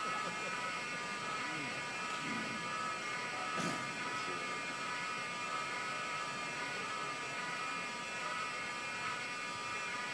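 Building fire alarm sounding a continuous, steady electric buzz.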